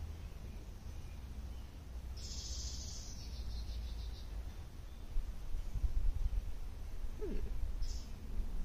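Outdoor backyard ambience: a high, fine-textured trill about two seconds in, lasting under two seconds, over an uneven low rumble of wind on the microphone that grows stronger from about five seconds in. A short 'hmm' comes near the end.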